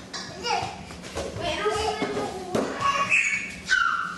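Children's and adults' voices in a room, wordless chatter and calls, with a high-pitched child's voice near the end.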